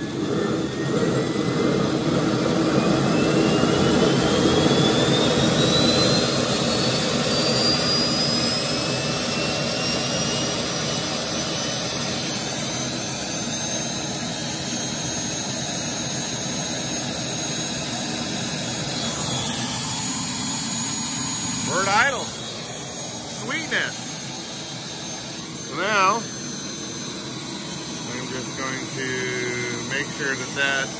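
Model turbine engine just after ignition, spooling up with a rising whine over the first ten seconds or so and then running steadily at idle. Two short warbling sounds stand out near the end.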